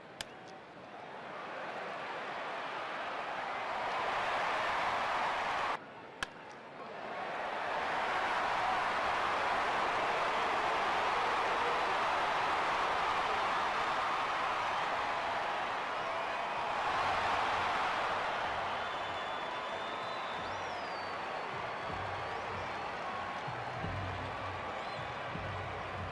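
Baseball stadium crowd noise rising into cheering, broken by an abrupt cut about six seconds in. Just after it a sharp crack, typical of a bat hitting the ball, sets off the loudest, long cheer, which eases off in the last seconds.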